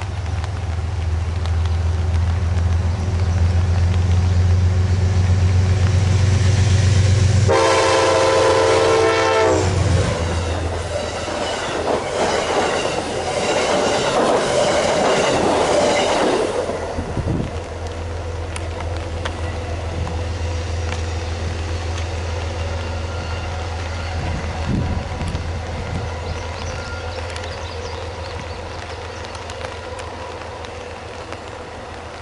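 Amtrak passenger train passing at speed. The diesel locomotive's deep engine drone builds as it approaches. A horn blast of about two seconds sounds as it goes by. The stainless-steel cars then rush past with rapid, regular wheel clicks on the rails, and the rumble fades as the train moves away.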